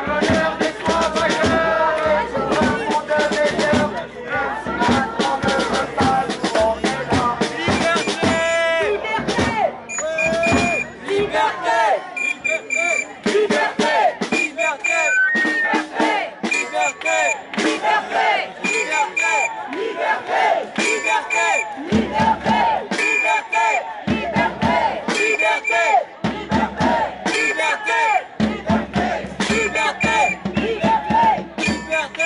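A protest crowd shouting and chanting over dense, rapid drumbeats.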